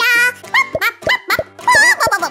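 High-pitched, wordless cartoon character vocalizations: a wavering note at the start, then several short rising chirps and another wavering note near the end, over light background music.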